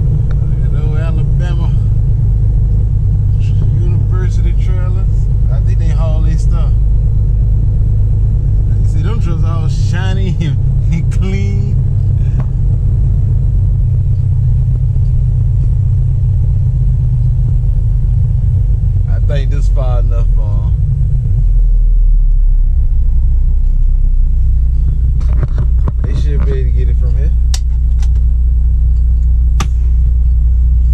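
Steady low engine and road rumble inside a moving vehicle's cab as it rolls slowly over a rough lot. The rumble deepens a little past the middle. A voice is heard over it in a few short stretches.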